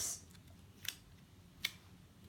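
Faint handling of clear sticky tape wrapped around a plastic ruler: quiet rustle with two short, crisp ticks, one about a second in and one near the end.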